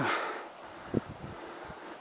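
Faint outdoor background noise with one short, dull thump about a second in.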